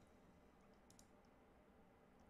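Near silence: room tone with a couple of faint clicks about a second in.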